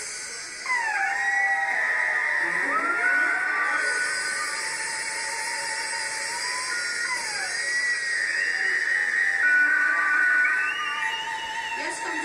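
Several high, wavering tones sliding up and down in pitch, overlapping one another, over a steady hiss, at a live rock show. The sound rises sharply in level about a second in.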